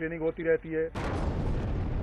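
About a second in, a sudden blast opens into a continuous rumble of explosions.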